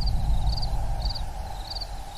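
Night ambience sound effect: a cricket chirping in short pulsed chirps about twice a second over a low steady rumble.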